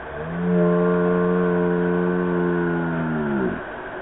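A person's long held yell on one steady pitch for about three seconds, sagging in pitch as it dies away, given while swinging out on a rope swing.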